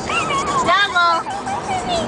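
Baby laughing and squealing in high, gliding bursts, with a quick run of laugh pulses about halfway through.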